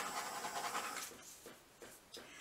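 Handheld butane torch flame hissing steadily as it is passed over wet acrylic paint to pop surface bubbles. The hiss fades out about a second in as the torch is taken away.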